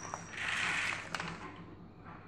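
A short whirring rattle of small plastic toy gears about half a second in, followed by a few light plastic clicks.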